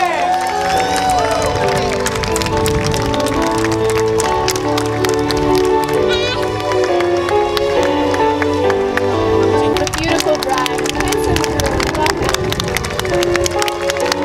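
Music with held, changing notes plays while a crowd of guests claps and calls out; the clapping grows denser in the second half.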